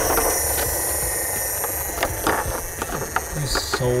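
Plastic toy school bus being pushed and handled by hand, rattling, with a few sharp plastic clicks over a steady hiss.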